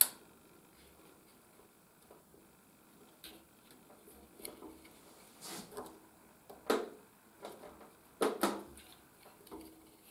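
Small clicks, knocks and scrapes from handling a welder's plastic wire-feed mechanism while flux-cored wire is threaded through the drive roll and tensioner. A sharp click comes right at the start, then a few seconds of near quiet, then short bursts of handling noise in the second half.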